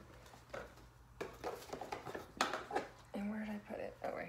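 A woman's voice speaking a few short, quiet words in a small room, with brief clicks of paper flashcards being handled.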